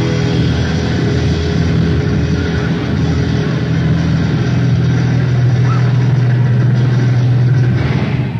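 Live rock band from a 1970 concert recording holding one loud sustained chord: a low droning bass and guitar tone with a noisy wash over it, cut off near the end.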